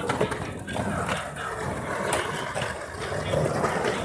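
Skateboard wheels rolling over rough asphalt, a steady rumble as the skater rides back toward the ledge.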